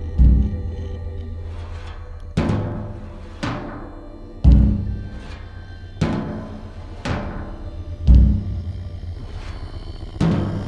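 Music: slow, heavy struck drum hits, three of them deep and booming, ringing out over a steady low drone.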